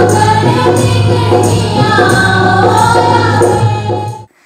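Folk song accompanying a stage dance: a group of voices sings a melody over a steady low drone and a regular percussion beat of about two strikes a second.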